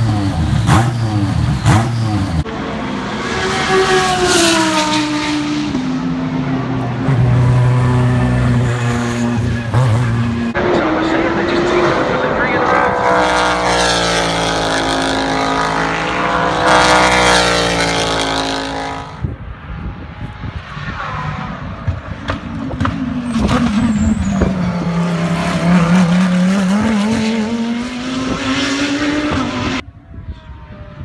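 Race car engines in a run of short clips that cut abruptly from one to the next. A Ferrari 488 GTLM race car's engine runs first, then race cars pass on track with engine pitch swooping. Near the end one engine's pitch drops, then climbs again as the car brakes and accelerates.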